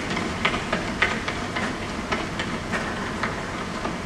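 Soundtrack of a film projected in a screening room: a steady hiss of street ambience with faint, regular taps a little under twice a second.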